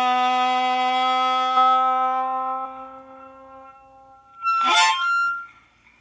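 Harmonica holding one long note that fades away over about three seconds, then a short, loud sliding note that settles on a high note and stops. These are the closing notes of a blues number.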